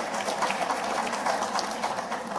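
Audience in a hall laughing at a joke.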